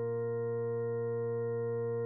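Ambient electronic music from a Eurorack modular synthesizer patch: a chord of soft, pure tones held steady without change.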